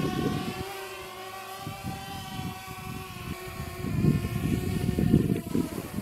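Small quadcopter drone's propellers humming steadily at one pitch, over an uneven low rumble of wind on the microphone. The hum dies away near the end as the drone sets down on its landing pad.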